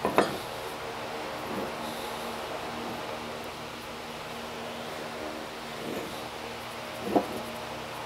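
Steady hum of a shop fan running, with two brief faint sounds, one right at the start and one about seven seconds in.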